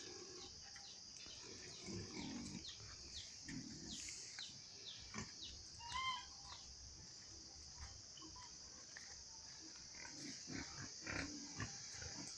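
Domestic pigs grunting faintly in their pen, a few low grunts in the first few seconds, over a steady high insect drone with scattered bird chirps.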